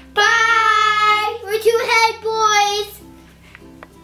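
A child singing: one long held note, then a second, shorter phrase that ends about three seconds in, after which it fades to quiet.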